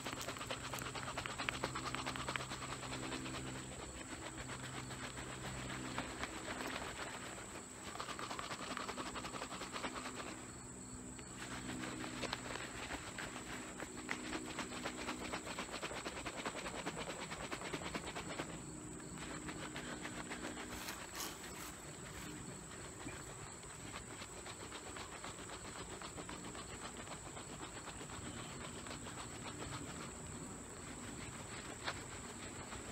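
A jar of sampled honey bees being shaken and rolled for a varroa mite count: a steady rustling hiss that breaks off briefly twice, with the low hum of bees buzzing coming and going.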